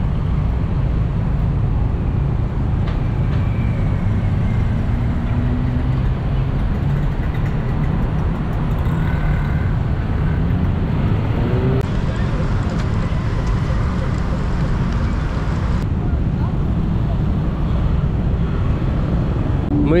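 Steady street traffic on a busy multi-lane city road: a dense low rumble of car and motorbike engines running and passing, with a few engine notes rising and falling in the first half.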